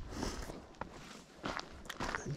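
A few footsteps crunching on a sandy, gravelly desert trail, faint and spaced out.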